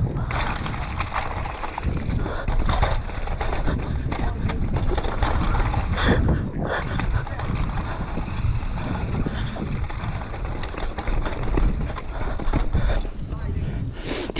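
Mountain bike riding fast down a dirt trail: steady wind rumble on the camera microphone, with tyres crunching over the dirt and the bike knocking and rattling over bumps.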